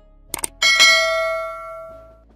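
Two quick clicks, then a bright bell-like ding that rings and fades over about a second and a half: the click-and-notification-bell sound effect of a YouTube subscribe-button animation.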